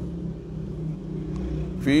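A low, steady hum in the background during a pause, with speech starting again near the end.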